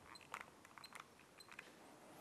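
Faint clicks and three short, high beeps from a handheld digital stopwatch as its buttons are pressed, in near silence.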